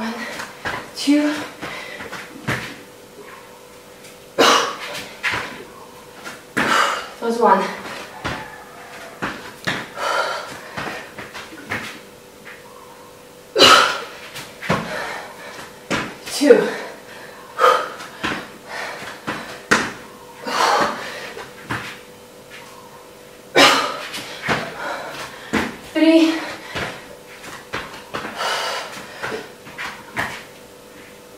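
A woman breathing hard during jump lunges and burpees, with forceful, partly voiced exhalations at irregular intervals of one to three seconds, mixed with thuds of her feet landing on an exercise mat.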